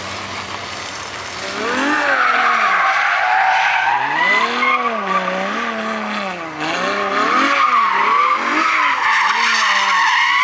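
Ferrari F12 Berlinetta's V12 doing donuts: the engine revs rise and fall again and again while the rear tyres squeal and skid. It runs steadily for the first second and a half, then the throttle comes on and the squeal starts.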